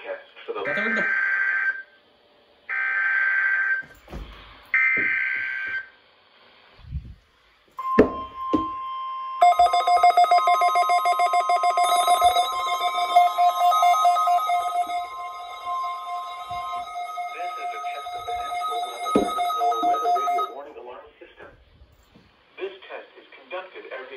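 NOAA Weather Radio Required Weekly Test received on weather radios: three one-second SAME digital header bursts, then the steady 1050 Hz warning alarm tone. Over the tone, the receivers sound their own pulsing alert beeps for about eleven seconds, and near the end a synthesized voice begins reading the test message.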